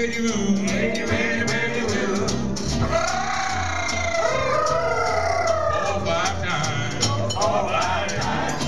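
Small acoustic jazz band playing an instrumental passage: upright bass and a steady clicking rhythm under a lead line whose notes slide and bend, strongest in the middle of the passage.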